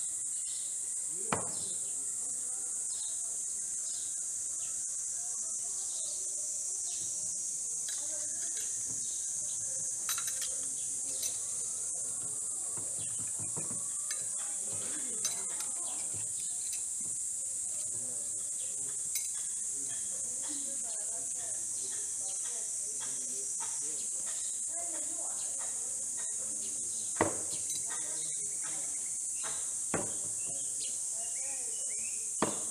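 Steady shrill drone of insects, with a few sharp knocks over it: a thrown knife striking the wooden target about a second in, small metallic clicks around the middle as knives are worked out of the target, and a louder knock near the end.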